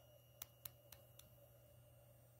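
Near silence: room tone with a faint steady low hum and four faint clicks in the first second or so.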